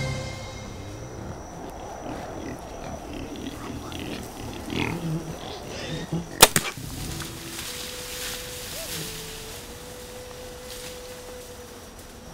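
Wild hogs grunting, then a single sharp snap about six seconds in, the loudest sound: the release of a Diamond Edge SB1 compound bow shooting an arrow at a hog.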